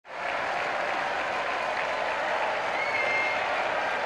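Crowd applauding, a steady dense clapping that fades in at the very start, with a brief high call rising out of it about three seconds in.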